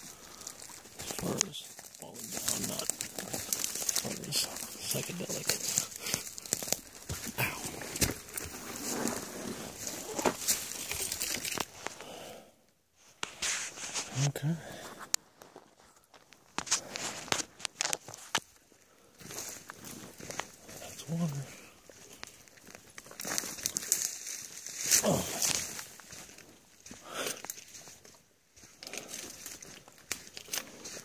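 Dry brush and dead twigs rustling and crackling against the body and phone as a hiker pushes through dense undergrowth. The crackling is thick and continuous for the first twelve seconds or so, then comes in scattered bursts.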